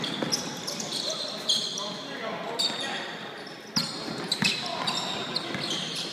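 Basketball game on a hardwood gym floor: the ball bouncing and scattered knocks of running feet, with short high sneaker squeaks and voices in the background, echoing in a large hall.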